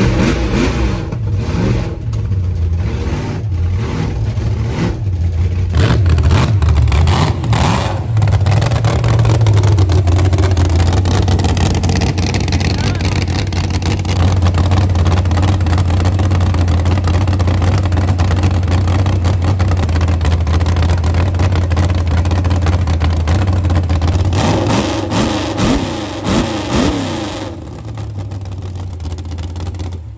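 V8 drag-car engine running: uneven throttle blips for the first several seconds, then a long steady idle, with a few more revs rising and falling near the end before the sound drops away.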